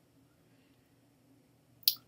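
Near silence with faint room tone, broken near the end by one short, sharp click.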